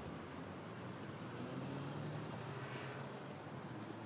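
Quiet outdoor background with a faint, steady low engine hum that grows a little clearer about a second and a half in.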